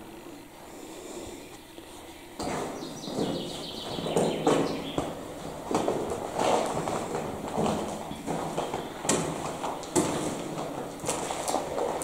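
Footsteps scuffing and crunching on the dirt-and-debris floor of a brick bunker: irregular steps and knocks starting a couple of seconds in.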